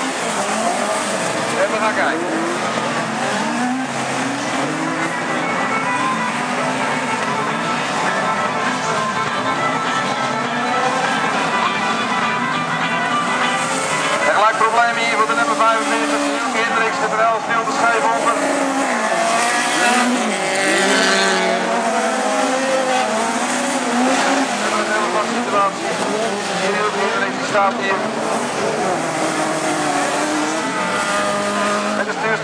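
A field of four-cylinder stock cars racing on a dirt oval. Many engines rev up and down together as the cars accelerate and brake round the bends, thickest and busiest about halfway through.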